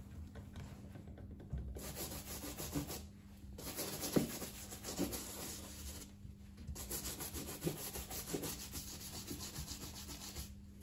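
Small bristle brush scrubbing back and forth over a leather boot, in three runs of quick strokes separated by short pauses.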